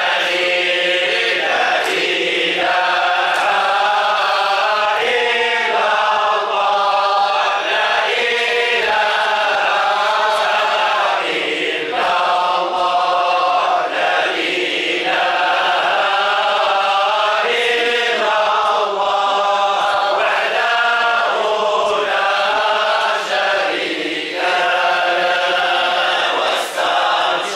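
A group of men chanting a Sufi dhikr together in unison, singing on without a break.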